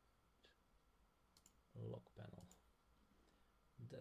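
A few faint, separate clicks of a computer mouse as a settings checkbox is clicked, with a brief low hum of voice about two seconds in.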